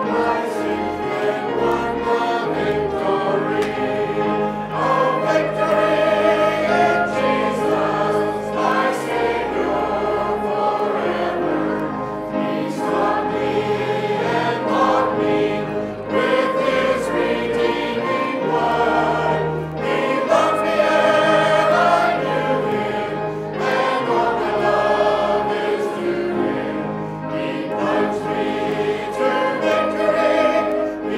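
A choir of many voices singing a Christian hymn in held, flowing lines over instrumental accompaniment with sustained bass notes.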